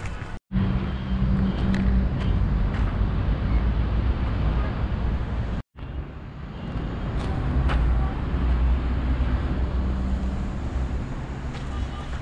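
Steady low rumble of road traffic, mixed with wind buffeting the microphone. The sound cuts out briefly twice, about half a second in and again near the middle.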